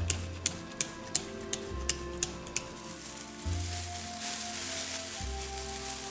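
Background music with held notes and a deep bass note about every second and a half. Over it, a hand-pumped spray bottle spritzes water in quick sharp clicks, about three a second, for the first two and a half seconds.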